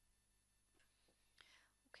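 Near silence: quiet room tone, with a faint breath about one and a half seconds in.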